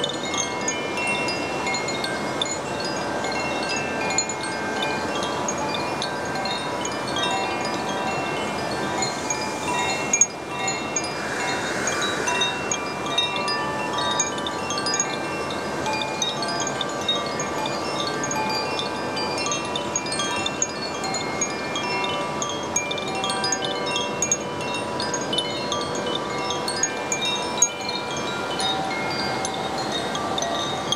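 Two Koshi chimes, bamboo tubes with tuned metal rods inside, swung by hand so their clappers strike the rods again and again, making a continuous wash of overlapping ringing notes at many pitches. A steady rushing noise lies beneath the notes.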